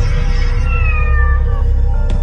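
A cat's single meow, falling slightly in pitch, over low background film music.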